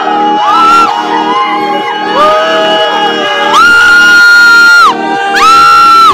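A group of young people screaming and whooping in excitement, with several long, high held screams that rise at the start and fall away at the end, over a steady lower pulsing background.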